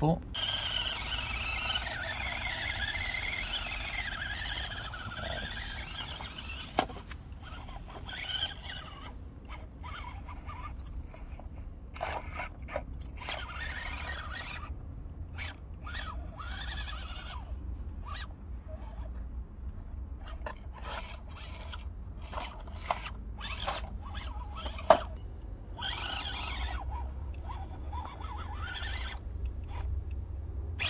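Axial SCX24 Bronco micro RC crawler's small electric motor and gear drive whining, rising and falling with the throttle as it crawls slowly over rocks. The tyres and chassis give scattered clicks and knocks on the stone, with two sharp knocks standing out, one about seven seconds in and one near twenty-five seconds.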